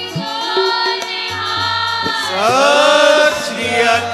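Sikh devotional kirtan music: a voice sings a long line that glides in pitch over sustained instrumental accompaniment. A low note recurs every couple of seconds.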